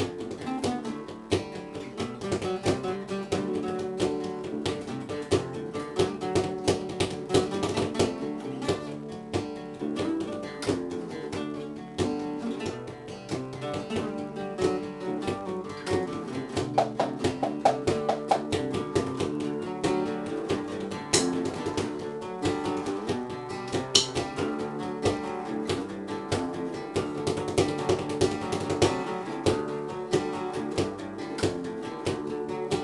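Several acoustic guitars strummed together in a steady, driving rhythm, playing a rock song's chord progression.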